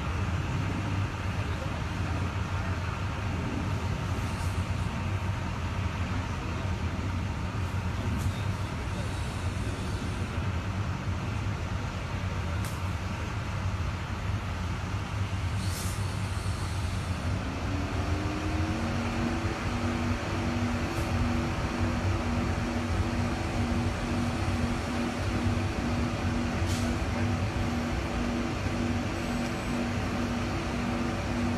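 Steady low hum of road traffic and a running vehicle engine. A little over halfway through, a motor spins up, rising in pitch, then settles into a steady, evenly pulsing drone.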